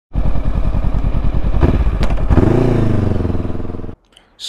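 Honda CB500X parallel-twin engine running under way, a loud even pulsing exhaust beat. A couple of sharp clicks come in the middle, and then the engine note changes to a smoother tone that rises and eases off. The sound cuts off suddenly at the end.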